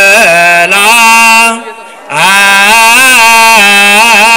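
A solo male voice chanting a slow, ornamented melody, holding long notes with wavering turns of pitch, with a short break for breath about halfway.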